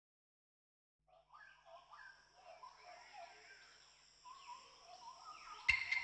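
Faint bird calls chirping over a steady high insect drone, with a click just before the end.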